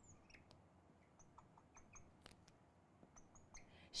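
Near silence with faint, short squeaks and ticks scattered through, from a marker pen on a glass writing board as electron dots are drawn.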